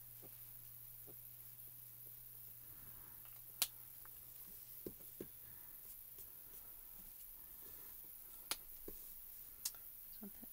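Faint room tone with a few sharp clicks from Copic alcohol markers being handled on the desk. The loudest click comes about three and a half seconds in, two softer ones follow about a second later, and two more come near the end.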